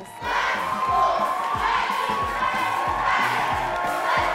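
High school pep band playing with a steady drum beat, under a crowd of students shouting and cheering.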